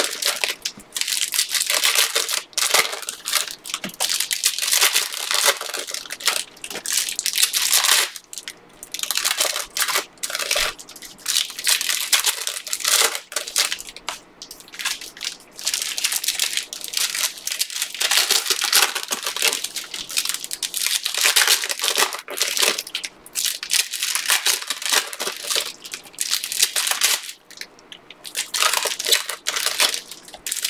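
Foil wrappers of Panini Prizm Fast Break basketball card packs being torn open and crinkled by hand, with cards shuffled out and stacked: a continuous loud crinkling that comes and goes with brief pauses.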